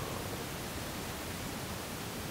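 Steady, even background hiss with no other events: the noise floor of the studio microphone feed in a pause between words.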